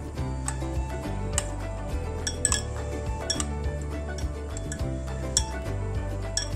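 A metal fork and spoon clinking against a ceramic bowl several times while turning a chicken ball in beaten egg, over steady background music.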